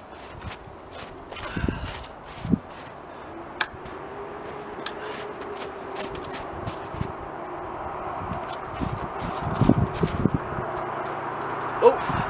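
Footsteps crunching in snow with a few scattered clicks in the first seconds, then a steady rushing outdoor noise that slowly grows louder.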